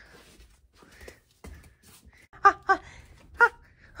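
A person's voice giving a few short grunting "uh" sounds in the second half, after faint rustling and handling noise from plush toys being moved.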